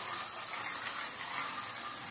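Micro slot cars running around a plastic slot track: a steady whirring of their small electric motors and gears.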